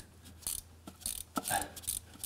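Ratcheting box-end wrench clicking a handful of times, unevenly spaced, as it drives a glow plug hole reamer down to its seat in a Mercedes diesel's pre-chamber. The reamer now turns by hand, past the initial layer of carbon.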